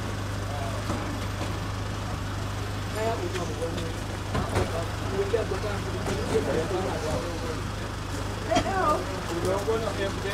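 Several people talking indistinctly over a steady low hum, the voices busier a few seconds in and again near the end.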